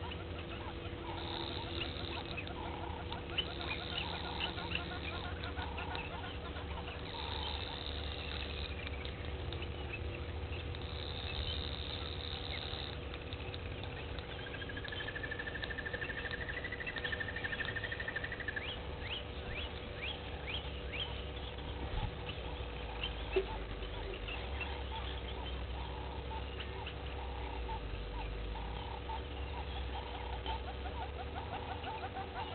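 Outdoor bush ambience of birds and other small wild animals calling: many short chirps and calls repeating about once a second, with one long whistled call about halfway through. A steady faint hum and a low rumble run underneath.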